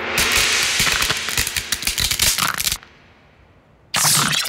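Cartoon sound effect of a hardened mud casing cracking: a dense run of crackles and snaps for almost three seconds. Then comes a quiet pause, and a sudden loud burst right at the end.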